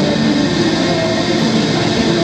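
Electric plucked string instrument played through a small portable amplifier with heavy distortion, sustained notes running on without a break.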